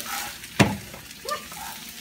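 Scrambled eggs frying in a pan with a steady sizzle, and one sharp knock a little over half a second in.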